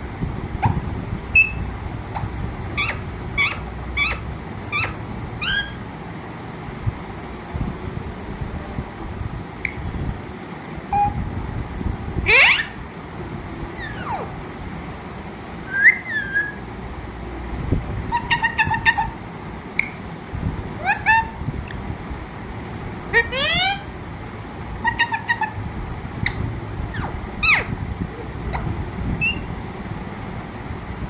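Alexandrine parakeet calling in short, scattered chirps and whistles, with two long rising whistles, one about 12 seconds in and one about 23 seconds in.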